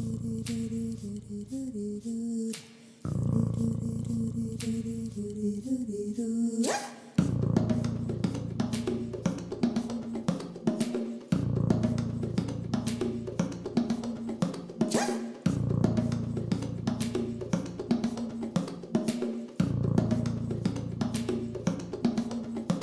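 Mouth harp (jaw harp) droning with a shifting twang of overtones, in repeating phrases of about four seconds each. About seven seconds in, a steady percussive beat of sharp clicks joins it.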